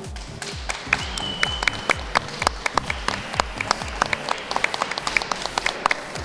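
A small group of people clapping by hand, over background music with a steady low beat.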